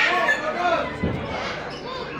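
Crowd chatter in a large hall, opening with a short, harsh, loud parrot squawk, with a single dull thump about a second in.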